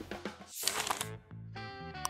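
Edited-in sound effects for a title-card transition: a short whoosh about half a second in, followed by a held, chime-like musical note that lasts about a second.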